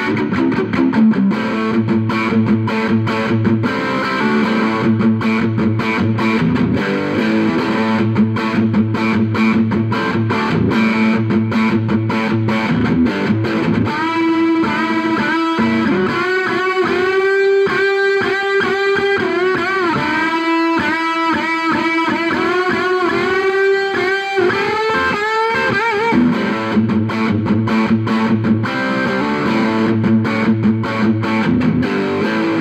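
Pine-bodied Shyboy Custom Esquire electric guitar, a single-pickup Tele-style guitar, played through the overdrive channel of a Rivera Clubster Royale amp and recorded direct. It starts with chordal riffing. About halfway through it moves into a single-note lead with string bends, and it goes back to riffing near the end.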